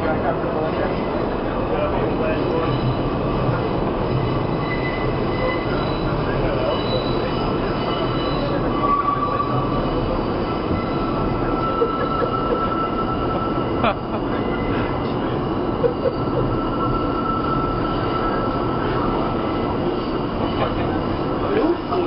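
NYC subway car running, its steady rumble and rattle filling the car from inside, with thin high wheel squeal drifting in and out. A few sharp knocks stand out near the middle.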